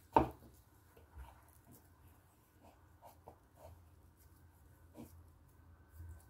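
A sharp knock just after the start, then faint soft handling sounds as hands shape egg-and-cheese patty mixture and set patties down on a bamboo cutting board, over a low hum.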